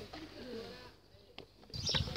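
A faint, low bird call in the first half over quiet outdoor background, then the sound drops almost to nothing for a moment before a low rumble returns near the end.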